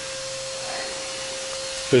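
Steady hum and whoosh of a running electric motor, with a faint even tone that stops just before the end.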